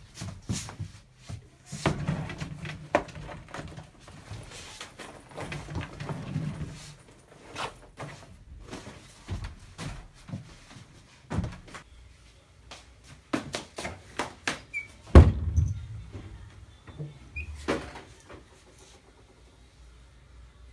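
Scattered knocks, clicks and clatter of things being handled as a person moves about a small room, with one loud thump about fifteen seconds in.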